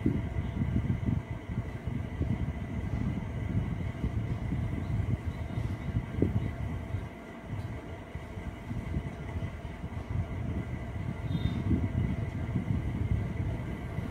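An uneven low rumbling noise runs throughout, with a faint steady high whine held over it.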